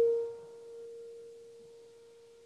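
A single grand piano note, struck just before, held and dying away as one pure tone until it has almost faded out about a second and a half in.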